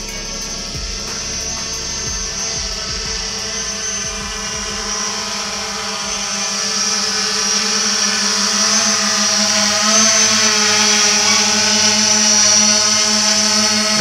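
Quadcopter drone's propellers whining steadily, growing louder as it descends close overhead, with background music fading out in the first few seconds.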